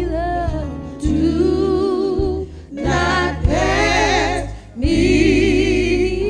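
Gospel singing: sung vocal lines with vibrato over steady, sustained low accompaniment chords, in phrases broken by short pauses about one second, nearly three seconds and nearly five seconds in.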